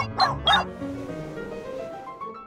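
Two short calls rising in pitch near the start, then cartoon background music climbing in a run of notes.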